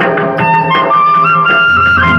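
Nagpuri folk music: a wind instrument plays a sustained melody that steps upward in pitch, over steady drum strokes.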